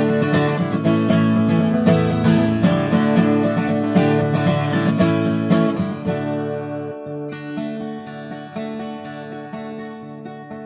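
Acoustic guitar strummed steadily in an instrumental break, thinning to lighter, quieter playing with ringing notes about six seconds in.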